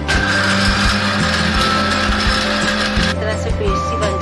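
Panasonic countertop blender running at speed, grinding soaked, peeled almonds with milk into almond milk, then switched off abruptly about three seconds in.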